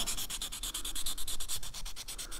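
600-grit wet sandpaper rubbed rapidly back and forth by hand on a freshly cast urethane resin part, about ten quick scratchy strokes a second, smoothing the mold's parting line to match the casting's gloss.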